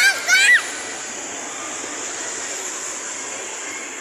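A young child's two short, high-pitched squeals in quick succession at the start, each rising in pitch, followed by a steady rushing noise.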